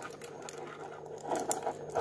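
A metal link watch bracelet and its fold-over clip clasp being handled, giving a run of small, quick metallic clicks and rattles.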